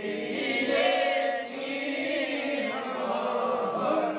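A group of men's voices chanting a devotional recitation together in a sustained, melodic unison.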